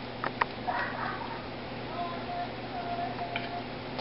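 Quiet handling of a wooden niddy-noddy wound with yarn: a couple of light clicks near the start and a soft rustle, over room tone. A faint steady tone sounds for about a second and a half in the second half.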